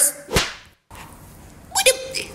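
A single sharp whip-like crack about a third of a second in, then a brief dropout and a short snatch of voice near the end.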